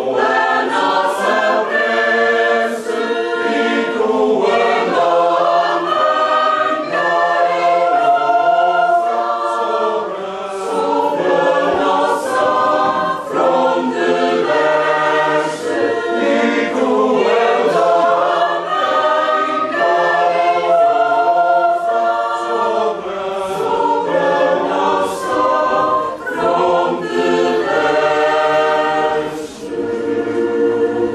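A choir singing, several voices together in harmony, continuously.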